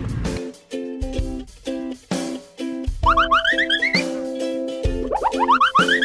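Background music with a steady, bouncy beat, overlaid about halfway through and again near the end by runs of short rising whistle-like glides.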